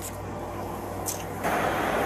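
Street traffic: a vehicle running steadily, louder from about one and a half seconds in as it comes closer.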